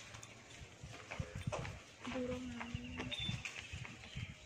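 Young goat tearing at and chewing a pile of fresh green fodder: a run of short, crisp crunching and rustling strokes from leaves and cut stalks. A brief, steady low call is heard about two seconds in.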